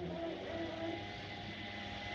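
Small engine of outdoor yard-work equipment running steadily.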